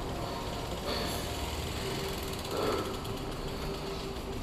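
A BMX bike rolling across a tiled floor, its rear hub's freewheel ticking as it coasts, over a steady indoor hum.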